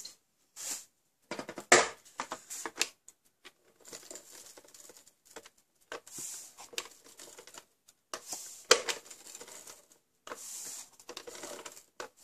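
Cardstock being handled and slid about, and a tape-runner adhesive dispenser being rolled across a black cardstock layer to stick it down: rustling, scraping strokes with sharp clicks, the loudest about two seconds in and again near nine seconds.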